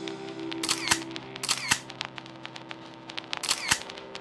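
Camera shutter sound effects clicking in three quick pairs, with fainter clicks between, over a soft sustained music bed.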